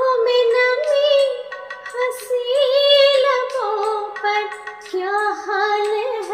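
A woman singing a Hindi ghazal melody in Raag Yaman over a karaoke backing track, holding long notes that glide and waver between pitches.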